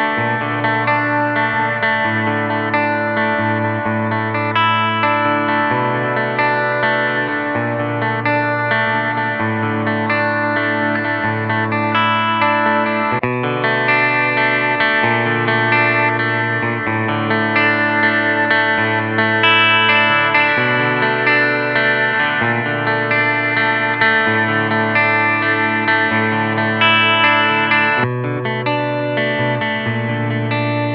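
Clean electric guitar playing a chordal passage through active pickups. For roughly the first 13 s it is on the EMG Retro Active Super 77 bridge pickup. The passage then restarts on the Fishman Fluence Classic bridge pickup (voice one), and near the end it switches again to the EMG middle pickup.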